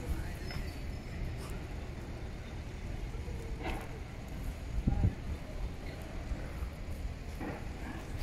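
Low, steady outdoor rumble with faint distant voices and a couple of sharp knocks around the middle.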